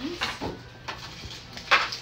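Small plastic portion cups clicking and clattering on a metal baking tray as they are handled and set in place: a few separate sharp knocks, the loudest a little before the end.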